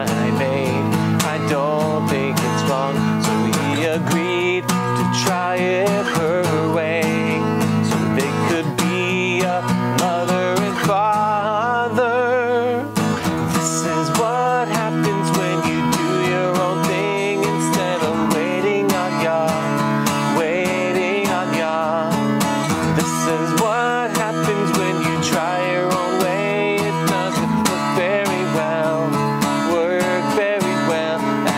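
A man singing a song while strumming an acoustic guitar, at an even level throughout.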